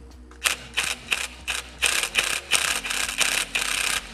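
Ryobi 18V cordless impact wrench hammering on an H8 Allen socket at a rear CV-shaft bolt: a few short bursts, then a longer run of hammering from about halfway through. The bolt does not break loose, because the wrench is set to forward and is driving it the tightening way.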